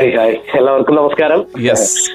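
Speech only: a man talking, with the thin, top-cut sound of radio audio.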